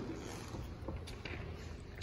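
Pickup truck's driver door being opened, a faint latch click about a second in over a low steady hum.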